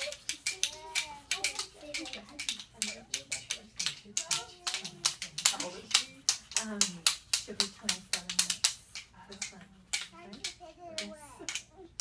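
Many quick, irregular sharp taps and claps from a group of toddlers and adults, with adult and toddler voices talking and chanting among them.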